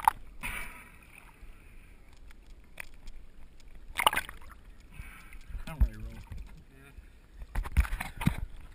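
Water splashing and sloshing around a swimmer's action camera as it moves through and breaks the surface of the spring. There is a sharp splash about four seconds in, a quieter stretch of water noise between splashes, and a cluster of splashes near the end.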